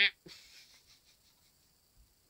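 The end of a short, flat, duck-like honk as the red clown nose is squeezed, cutting off just after the start. A faint click follows, then near silence.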